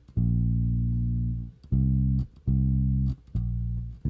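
Electric bass guitar plucked with the fingers: one long low note, then three shorter notes in an even rhythm.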